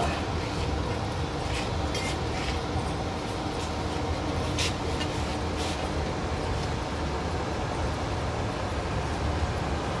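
A 15 HP geared electric motor drives a drying oven's turning agitator paddles with a steady low mechanical hum. Several short clicks and knocks come in the first half.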